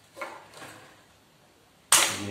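A pair of scissors snips through an insulated wire, a single sharp snap near the end, after a faint rustle of handling at the start.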